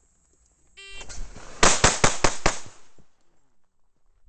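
Electronic shot timer gives a short start beep, then a semi-automatic pistol fires five rapid shots about a fifth of a second apart. These are the loudest sounds.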